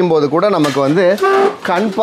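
A man's voice runs without a break, in a melodic, sing-song line with one held note a little past the middle. No other sound stands out.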